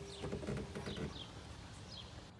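A few faint, short, high chirps, like small birds calling, over a low steady background rumble.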